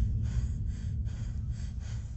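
A person's rapid, heavy breathing, about three breaths a second, over a steady low rumble.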